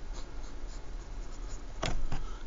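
Ballpoint pen writing on paper in short scratching strokes, with a single sharp knock near the end.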